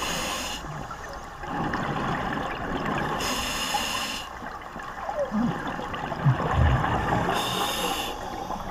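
Scuba diver breathing underwater through a regulator: a hiss from the demand valve on each breath in, about every four seconds, with exhaled bubbles rumbling and gurgling between the breaths.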